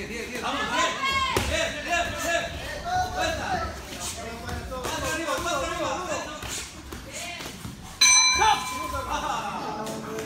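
Shouting voices from coaches and spectators over an amateur boxing bout, with a few short thuds. About eight seconds in, a single loud ring-bell strike rings out and fades, signalling the end of the round.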